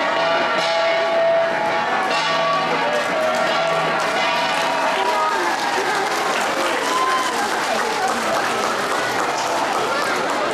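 Cordillera flat bronze gongs (gangsa) ringing, stopping about halfway through. After that comes the chatter and clapping of a crowd.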